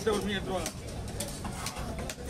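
A voice briefly at the start, then several sharp knocks of a knife striking a wooden chopping block as a fish is cut up.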